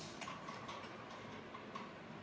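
Faint, light clicks and ticks from handling a yellow plastic digital hanging scale as batteries sit in its battery compartment.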